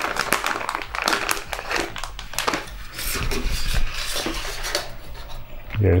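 Crinkling and rustling of a metallised plastic anti-static bag being handled and opened, with irregular crackles.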